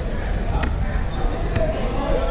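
Indistinct voices and low rumble in a gymnasium, with two sharp knocks, about half a second in and about a second and a half in.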